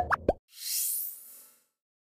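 Electronic sound effects of an animated news end card: a few quick popping blips with sliding pitch, then a bright shimmering whoosh that rises in pitch and fades out after about a second.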